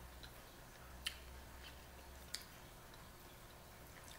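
Mostly quiet, with a few faint sharp clicks of mussel shells being pried apart and handled by hand. The two clearest come about a second in and just past two seconds.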